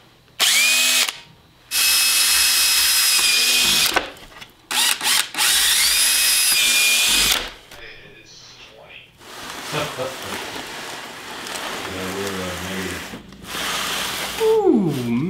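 Makita cordless drill running in a few bursts on a plastic milk crate: a short run, then longer runs of about two seconds each, the motor's whine climbing as it spins up and then holding steady. Two quick blips come between the longer runs.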